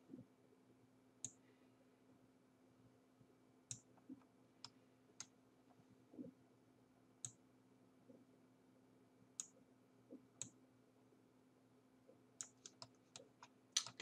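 Scattered single clicks of a computer mouse, about a dozen spread out, then a quicker run of clicks near the end, as mask points are placed and dragged in editing software. Under them is a faint steady low hum in an otherwise near-silent room.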